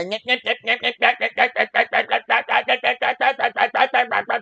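A person's voice mimicking a monotonous rapped vocal: one short syllable repeated quickly and evenly at a single pitch, about seven or eight times a second.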